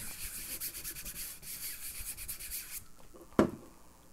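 Paper being burnished by hand with a round burnishing tool over a gel printing plate to pull a ghost print: quick back-and-forth scrubbing strokes for nearly three seconds. A single sharp knock follows a little before the end.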